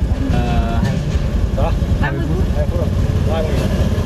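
A car engine idling as a low, steady rumble, heard from inside the cabin, with a few short spoken words over it.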